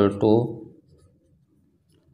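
A man's voice says one short word, then a pen writes faintly on paper.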